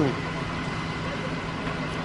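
Steady engine hum under a wash of hiss, fitting the fire engine nearby running its pump to feed a firefighting hose.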